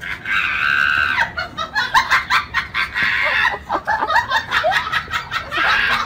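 People laughing and shrieking in short, high-pitched bursts. A long shriek comes near the start and another loud stretch near the end.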